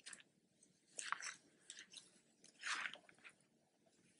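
Faint, scratchy rustles of yarn against a Tunisian crochet hook and fingers as loops are pulled up onto the hook, in a few short bursts.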